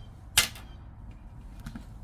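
A single sharp click or snap about half a second in, from a paper scratch-off ticket being handled, then faint handling noise.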